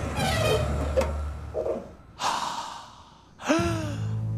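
A person gasps sharply, a breathy burst about halfway through, followed near the end by a short vocal exclamation whose pitch rises and then falls.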